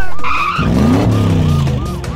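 Cartoon sound effect of a police car speeding off: a short tire screech about half a second in, then an engine revving up, over a fast repeating siren whoop.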